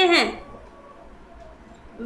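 A woman's voice finishing a word, then a pause of about a second and a half with only faint room tone.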